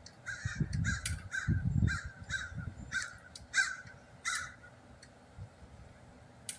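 A bird outdoors calling repeatedly: a quick series of about eight short calls over some four seconds, with a low rumble underneath during the first two seconds.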